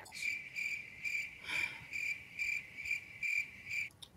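Crickets chirping in a steady run of short pulses, about two a second, starting and stopping abruptly: the stock 'crickets' awkward-silence sound effect.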